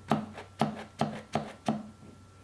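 Pump dispenser on a bottle of hair gel pressed five times in quick succession, a sharp click with each stroke as the gel is dispensed into a palm.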